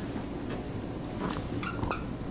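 Steady room hum, with a few short squeaks from a marker being drawn across a whiteboard in the second half.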